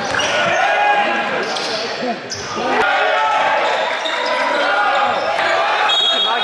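Live basketball game audio in a gym: sneakers squeaking on the court in many short, bending squeals, a basketball bouncing, and a crowd talking and calling out, all echoing in the hall.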